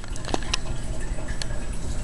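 Handling noise: a few light clicks and taps over a steady low rumble as the camera and small plastic items are moved about.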